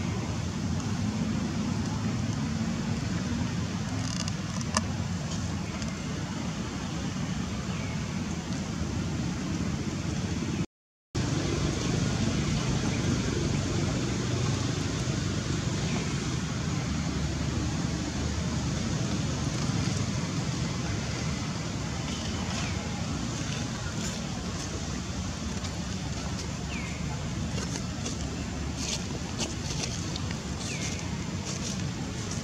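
Steady outdoor background noise with a low rumble, a brief gap of silence about eleven seconds in, and a few faint short falling chirps scattered through it.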